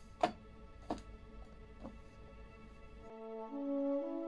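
Classical music playing, with three sharp knocks in the first two seconds as a tortilla is handled over a plate.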